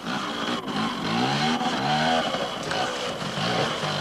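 Small trials motorcycle engine revving up and down, its pitch rising and falling several times as the rider works the throttle through the course.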